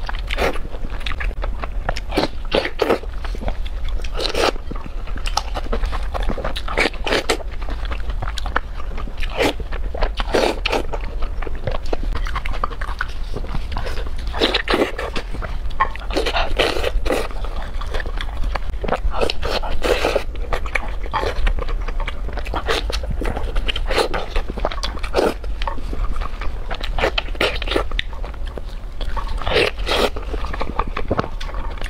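Close-miked eating sounds of a person biting into and chewing roasted pork: irregular crunches and bites, one every second or two.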